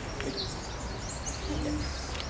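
Birds chirping in short, high calls, with a brief lower call about one and a half seconds in, over a faint low rumble.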